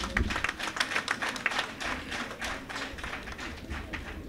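Audience clapping: a dense, irregular patter of many hands that eases slightly toward the end.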